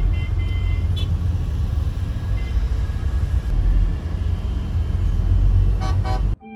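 Steady low rumble of a car's engine and road noise heard from inside the cabin, with a few faint high tones in the first second.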